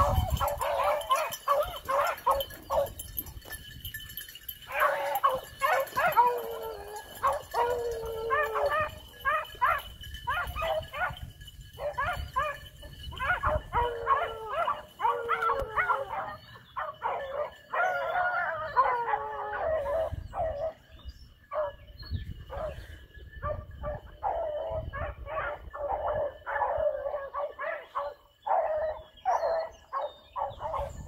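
A pack of beagles baying continuously on a rabbit's trail: many overlapping short barks from several dogs, broken by drawn-out howling bawls that fall in pitch.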